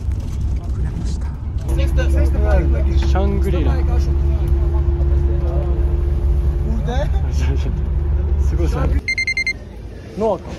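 Steady low engine and road rumble inside a moving long-distance bus, with passengers' voices over it. Near the end the rumble cuts off and a short burst of rapid high electronic beeping follows.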